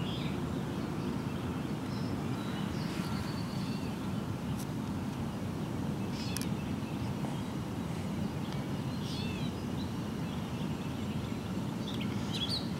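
Steady low hum of distant city traffic, with a few short bird chirps scattered through it.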